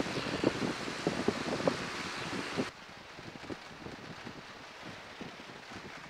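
Wind buffeting the microphone inside a Piper J3 Cub's cockpit: a rushing hiss with irregular gusty knocks, which drops suddenly to a quieter, duller hiss about three seconds in.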